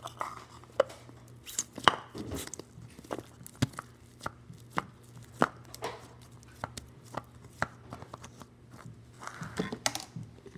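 Blue slime squeezed and kneaded by hand in a plastic tub, giving irregular sticky pops and clicks, about one or two a second.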